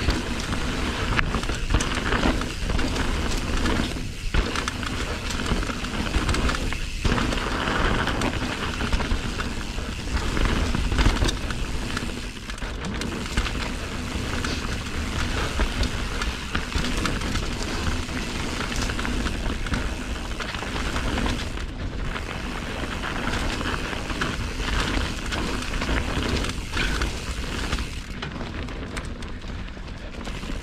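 A Yeti mountain bike descending a dirt forest singletrack at speed. Wind buffets the microphone with a steady low rumble, over tyres rolling on dirt, and the bike's chain and frame rattle and knock on the bumps.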